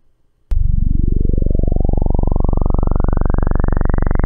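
A freshly generated analog-sawtooth wavetable .wav file played back as raw audio, starting about half a second in. It is a loud, very low buzz built from summed sine harmonics, and it grows steadily brighter as each successive frame of the table adds more harmonics.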